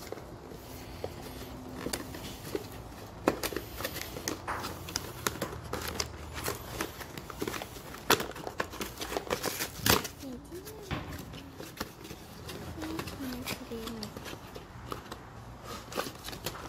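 Cardboard toy box and its plastic packaging being pulled open and handled: irregular crinkling, rustling and sharp clicks, with several louder snaps.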